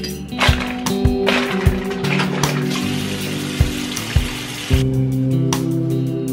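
Bathroom sink tap running for about four seconds and then shut off, water filling a washcloth for face washing. Background guitar music with a drum beat plays throughout.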